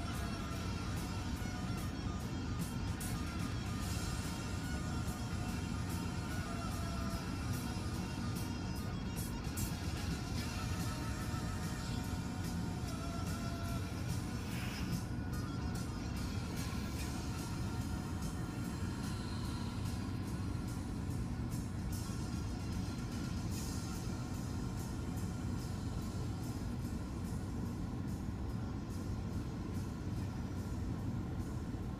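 Music playing quietly from a car's CD player, heard inside the car cabin over a steady low rumble.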